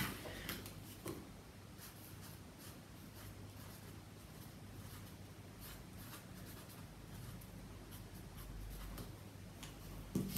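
Felt-tip pen writing on paper: faint, irregular scratchy strokes as letters are drawn.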